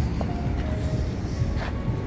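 Outdoor city background: a steady low rumble of distant traffic, with a few light scuffs of footsteps on paving and a few faint held notes.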